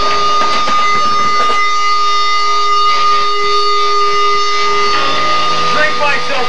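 Feedback from the band's amplifiers: a loud, steady high whine held at one pitch, with a lower steady tone beneath it. There is some scattered stage and crowd clatter in the first second or so.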